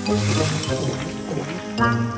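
Cartoon gulping sound effect, a run of bubbly glugs as a character drinks from a bottle, over light background music. A new musical phrase comes in near the end.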